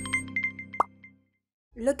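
The tail of a logo intro jingle: sustained synth notes fading out under a quick run of short, high plinking notes, then a single rising bloop about a second in, followed by a short silence.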